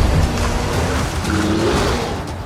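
Film trailer sound mix: loud splashing and churning water over music with a heavy low end.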